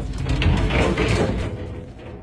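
Frosted-glass sliding shower door on a bathtub being slid open along its track, a rolling scrape lasting about a second and a half before fading.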